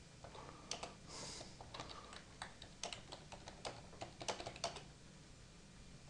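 Computer keyboard typing: a run of faint, irregular keystrokes that stops a little before the end.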